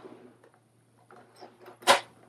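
Faint rustling and light handling noises from rummaging through desk supplies, then one sharp knock near the end as something is set down or knocked.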